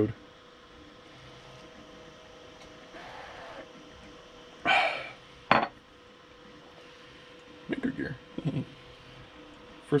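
Ceramic mug set down on a stone countertop: one sharp clink about five and a half seconds in, just after a brief handling noise. Beneath it runs the faint steady hum of a 3D printer working through its first layer.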